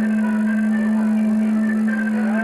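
Live band playing music, with a steady held low note running under the shifting higher notes.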